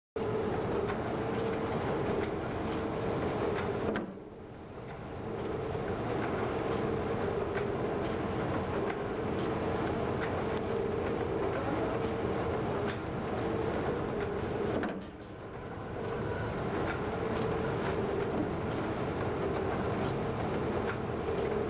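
Wire nail making machine running, a continuous rhythmic mechanical clatter over a steady hum, dipping briefly twice.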